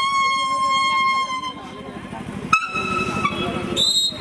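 A leaf held to the lips and blown as a whistle (Nepali pat bajaune), playing long held notes: one steady high note that stops about one and a half seconds in, then after a short gap a slightly higher note starts sharply, and near the end it leaps to a much higher squealing note.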